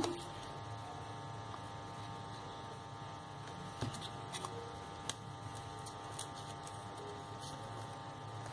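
Faint, steady electrical hum in the room, with a few soft clicks from handling crepe paper and a glue bottle in the middle.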